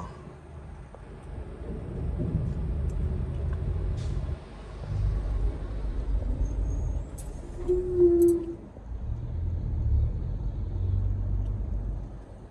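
Low engine rumble of a Mercedes-Benz city minibus driving slowly past close alongside, heard from inside a car; it swells and eases off. About eight seconds in, a short steady tone is the loudest moment.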